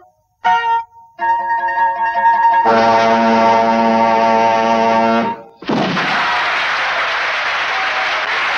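A swing combo of saxophones, piano, guitar, double bass and drums plays a few short stabbed chords, then a long held final chord that stops about five seconds in. An audience then applauds.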